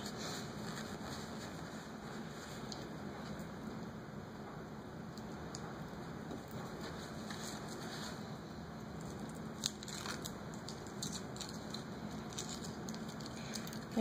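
A wax-coated foil packet and paper towel crinkling and crackling faintly as fingers pick the wax off and peel the foil open, with scattered small clicks that grow busier in the second half.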